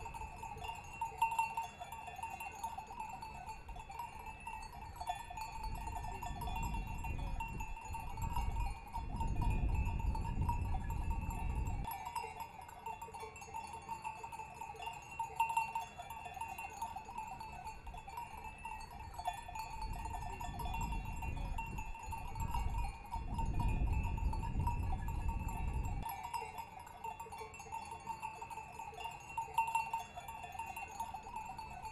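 Many small bells clinking and jingling without a break. Two stretches of low rumble rise and fall, one about a quarter of the way in and one past the two-thirds mark.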